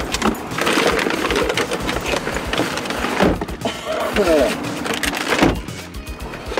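Indistinct voices over rustling and clunking as bags and belongings are handled around the back seat inside a parked car.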